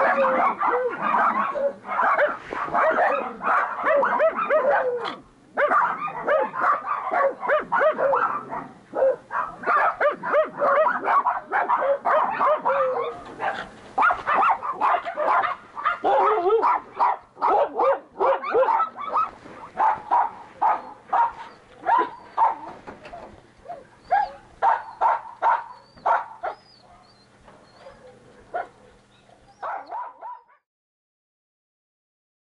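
Many kennel dogs barking at once, a dense overlapping chorus that thins to scattered barks and grows quieter over the last several seconds.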